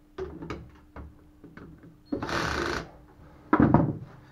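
Cordless drill-driver running in one steady burst of just under a second, starting about two seconds in, as it tightens a water-pump housing bolt on an outboard lower unit with its torque setting turned down. Light clicks of handling come before it, and a short loud rattle near the end.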